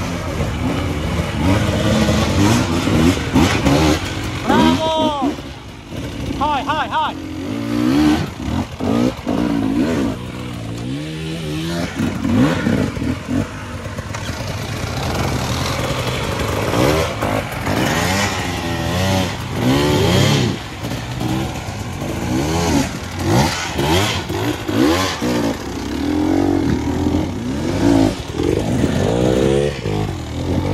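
Two-stroke enduro dirt bike engines revved hard and repeatedly, the pitch rising and falling over and over, as the bikes are forced up a steep dirt climb with little grip.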